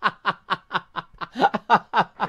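A person laughing in a long, even run of short 'ha' bursts, about five a second.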